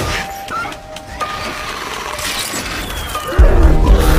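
Film soundtrack: background music with sound effects, then a sudden loud, deep hit about three and a half seconds in.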